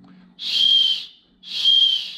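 Plastic emergency whistle built into a backpack's chest-strap buckle, blown twice: two short, high-pitched blasts, each under a second, at one steady pitch.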